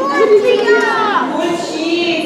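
Speech, with children's voices in it.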